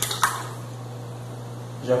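Beaten eggs poured into a mixing bowl of creamed margarine and sugar: soft and faint, with one light tap just after the start, over a steady low hum.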